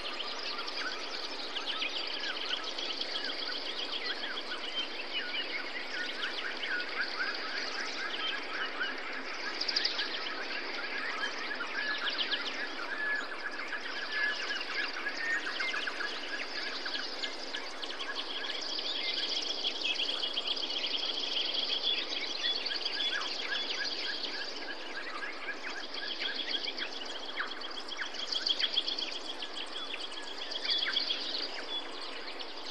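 Many birds chirping and trilling over a steady background hiss, a busy natural soundscape.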